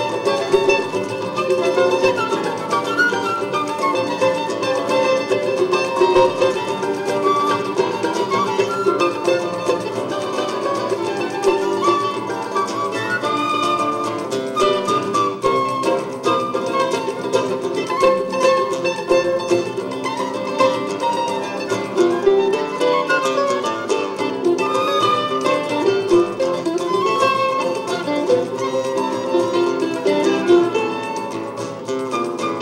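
Live choro ensemble playing: a flute melody over a small plucked-string instrument and acoustic guitar, with a pandeiro keeping the rhythm.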